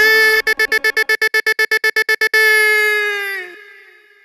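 A held electronic tone from a DJ's sound effect, chopped into a rapid stutter of about ten pulses a second for about two seconds. It then sustains and fades out, dipping slightly in pitch as it dies away.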